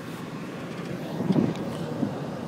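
Road and wind noise inside a car coasting along the road without the engine pulling it, with a brief louder bump about one and a half seconds in.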